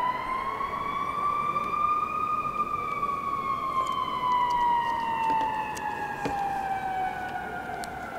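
An emergency vehicle's siren sounding one long, slow wail: the pitch rises for about the first two and a half seconds, then falls steadily through the rest.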